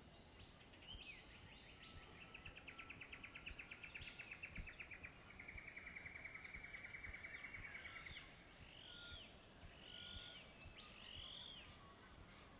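Faint birdsong: a long, fast trill lasting several seconds, followed near the end by four short, arching chirps.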